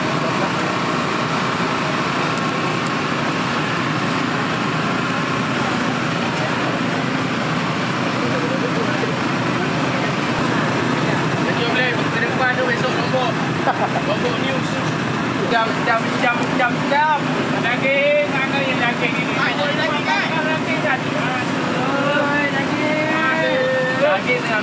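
Busy street-market background: a steady motor-like drone under people's chatter, with voices growing more prominent from about halfway through.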